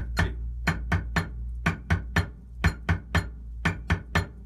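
Drumstick playing steady eighth notes with one hand on a practice pad, about four strokes a second, against a metronome clicking at 120 beats per minute.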